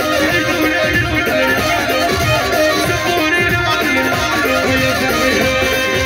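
Loud live band music: an amplified lead melody over a steady beat of hand drums and a drum kit.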